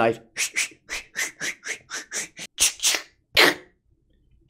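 A man making a rapid run of short hissing mouth sound effects, about four or five a second, as if for a knife slashing; they stop about half a second before the end.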